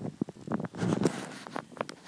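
Handling noise: rustling and rubbing on the microphone as the handheld camera is moved about, with a few light clicks from the hand on the plastic LEGO figure.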